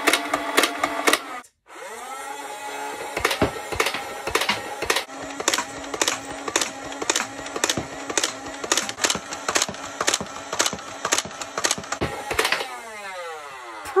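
Motorised foam dart blaster (Buzz Bee Alpha Auto 72) firing full-auto: the flywheel motors spin up with a steady whine, and darts go off in an even stream of roughly two to three shots a second as the drum rotates. Near the end the motors wind down with a falling whine. A short burst is cut off about a second and a half in.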